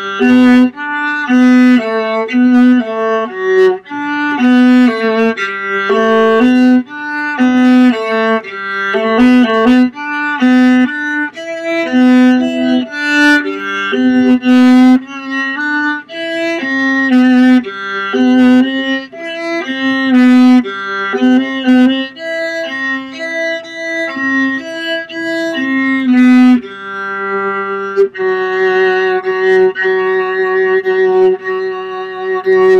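Solo viola played with the bow: a steady line of separate notes in the instrument's middle range. Near the end it settles into one long held sound.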